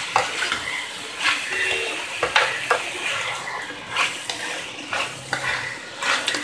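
A spatula stirring chopped vegetables in tomato pasta sauce around a nonstick frying pan, with irregular scrapes and sharp clicks as it knocks against the pan.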